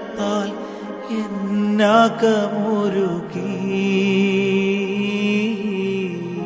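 Malayalam Christian devotional song music on keyboard: a bending melody line over held chords for the first half, then long sustained notes with a wavering high line.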